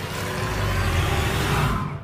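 A loud, low rumbling noise with a hiss over it, swelling steadily and cutting off abruptly near the end.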